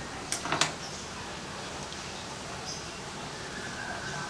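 A quick cluster of three or four light clicks about half a second in, then a quiet steady background hiss.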